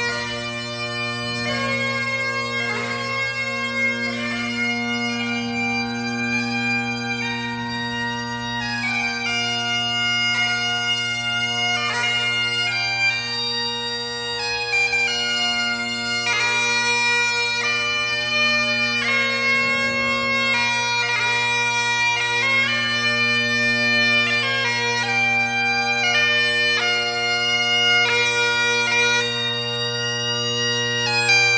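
McCallum AB3 Great Highland bagpipes playing a tune on a McCallum Gandy chanter with a Shepherd reed, over steady drones fitted with Ezee drone reeds. The chanter reed is still new and not broken in, and the piper finds high A and high G coming out a little broken.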